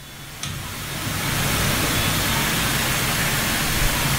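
Steady hiss with a faint low hum underneath, swelling over the first second and then holding even.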